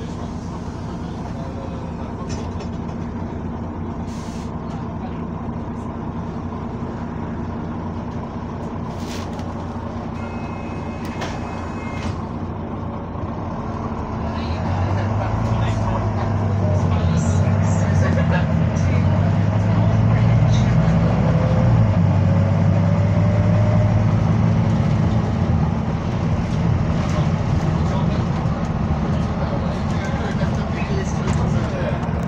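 Diesel bus engine idling steadily, heard from inside the passenger saloon, then working harder and louder as the bus pulls away and picks up speed about halfway through.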